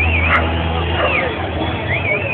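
Low steady drone of a racing truck's diesel engine running, easing off about a second in. A warbling high tone sounds at the start and again near the end, over voices.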